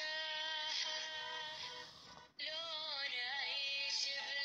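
A song with one sung voice holding long, steady notes; it drops away for a moment about two seconds in, then returns with a wavering, bending melody.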